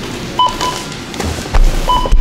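Checkout barcode scanner beeping twice, a short tone about half a second in and another near the end, with a low thump of handling noise between them.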